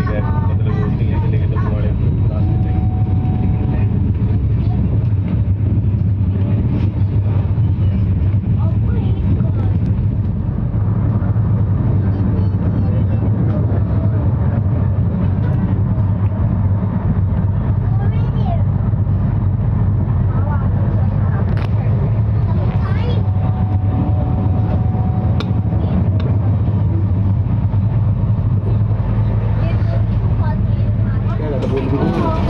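Steady low rumble of a moving Tejas Express train, heard inside a chair-car coach, with passengers' voices faintly in the background.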